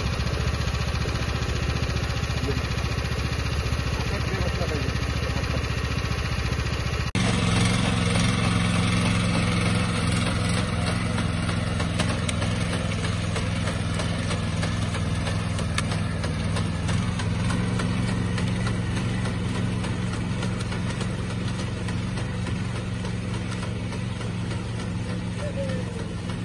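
Small engine of a walk-behind rice transplanter idling with a fast low pulse. After a cut about seven seconds in, another walk-behind rice transplanter's engine runs steadily while it plants.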